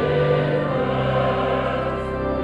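Choir singing in held chords that change about once a second, over sustained low notes.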